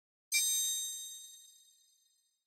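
A bright, high-pitched chime sound effect: one sudden ding with a shimmering jingle about a third of a second in, ringing on and fading away over the next second and a half.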